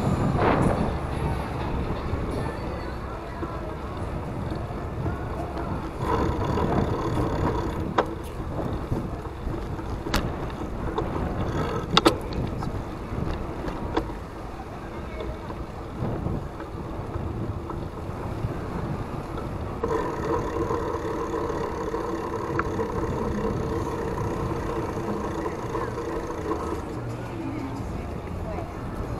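Low rumble of wind and motion on a moving action camera's microphone, with a few sharp clicks or rattles a third of the way in and passing street voices and traffic.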